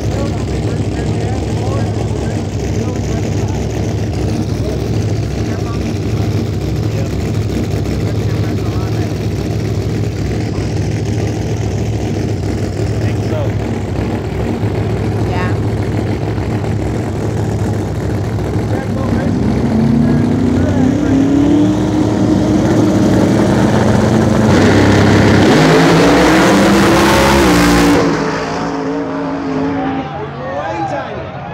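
Big-tire drag race car engine running with a steady low rumble, then revving up with pitch rising in steps from about two-thirds of the way through. It grows loudest just before cutting off suddenly near the end.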